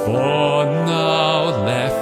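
Antique foot-pumped harmonium (reed organ) holding steady chords, with a man's voice singing a long, wavering note over them that dips in pitch near the end.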